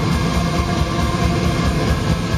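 Black metal band playing live at full volume, heard from the crowd: distorted guitars over a rapid, steady bass-drum pulse.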